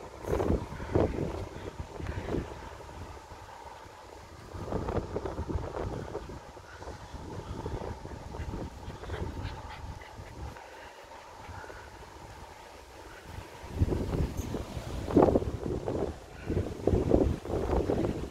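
Wind buffeting the microphone: a low rumble that comes and goes in gusts, strongest over the last few seconds.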